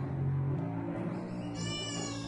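Cello bowed in free improvisation: a low sustained note that shifts to a different pitch about half a second in, with a brief high, bright sound full of overtones near the end.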